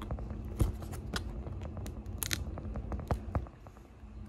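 Small plastic paint pots clicking and tapping on a tabletop as they are set down and their snap-on lids handled. A sharp tap comes about half a second in and a quick cluster of clicks a little after two seconds.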